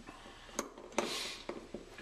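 Small steel parts of a homemade tailstock alignment tool clicking and clinking as a T-handle hex key is fitted into its lock screw: a few sharp metal clicks, with a short scrape after the one about a second in.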